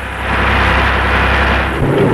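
Christie tank driving at speed: a steady, noisy rumble of engine and tracks that swells after the start and eases toward the end, over a low hum that stops shortly before the end.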